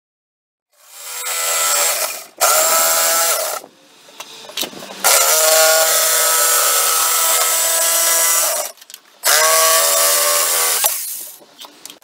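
Corded jigsaw sawing through the wooden back panel of an end table along a straight line, the motor running in about four stretches that stop and start again with short pauses and a quieter stretch in between.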